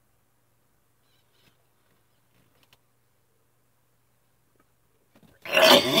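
A man retching over a bucket: near silence, then one loud, hoarse gag near the end, brought on by nausea.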